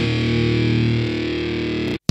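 Nu metal music: a distorted electric guitar chord held and ringing out, cutting off suddenly at the end of a song.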